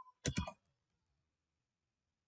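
A quick run of about three computer keyboard keystrokes a quarter of a second in, typing a name.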